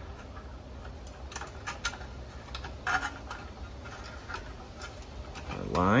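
Light, irregular metallic clicks and ticks of small parts being handled as the thermocouple assembly of a propane patio heater's burner is refitted by hand.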